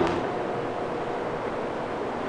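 Steady, even background hiss of room tone, with no distinct event in it.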